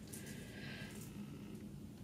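Faint handling of a Pandora charm bracelet's metal clasp as it is worked open: a few soft metallic ticks in the first second over a low steady hum.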